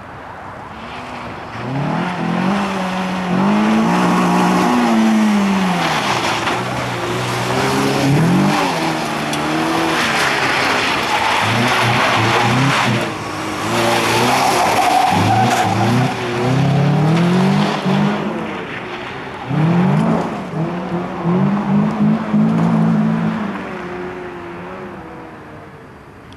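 Renault Clio rally car engine revving hard, its pitch climbing and dropping over and over through gear changes and lifts. The car approaches, is loudest from about two seconds in until around nineteen seconds, with tyres briefly squealing as it slides past, then fades as it drives away.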